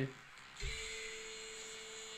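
A soft thump about half a second in, then a steady single-pitched hum with a faint hiss.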